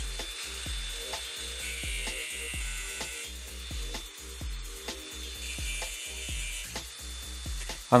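Angle grinder's abrasive disc cutting through a hardened steel screwdriver bit held in a vise, a steady hissing grind for about the first three seconds, then fainter. Background music with a regular low beat runs underneath.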